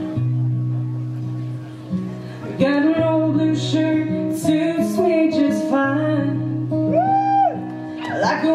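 Acoustic guitar playing, joined about two and a half seconds in by a woman singing.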